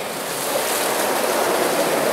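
Spring water running strongly out of the ground in a steady rushing stream, growing a little louder over the two seconds.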